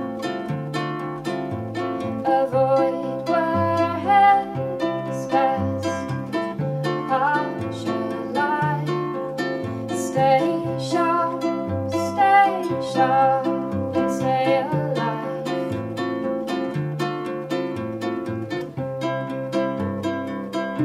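Instrumental passage of an acoustic folk song: a ukulele and an acoustic guitar picking many quick notes over a bowed cello's low, held bass notes that step from pitch to pitch.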